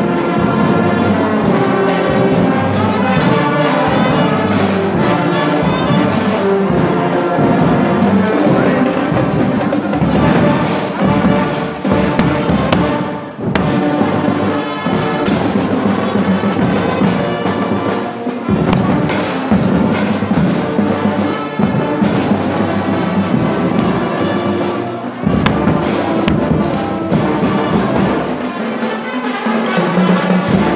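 School marching band playing live: trumpets, trombones and sousaphones over snare drums, bass drum and cymbals. The sound drops briefly twice, about thirteen seconds in and again near twenty-five seconds.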